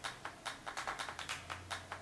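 Background electronic music in a percussion-only stretch: a quick, even beat of sharp hits, about seven a second, with no melody, and a low bass note coming in about halfway through.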